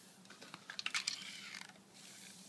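A hand-squeezed plastic bottle, faintly crackling with a run of small clicks, while air hisses out through a perforated woven house wrap stretched over its mouth. The hiss falls in pitch near the end: the perforated wrap is letting air leak straight through its holes.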